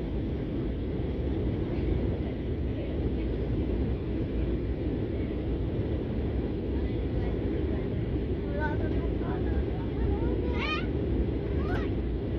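Steady cabin noise inside a jet airliner descending to land: an even rumble of engines and airflow. A brief high-pitched voice cuts through a few times near the end.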